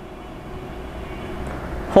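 Low background rumble that grows a little louder toward the end.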